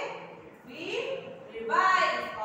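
High-pitched voices speaking in a sing-song, chanting way, the pitch rising twice with hissy consonants, then a higher held syllable near the end.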